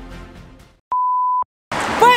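Background music fading out, then a single electronic beep: one steady, even tone about half a second long that stops abruptly. Street noise starts near the end.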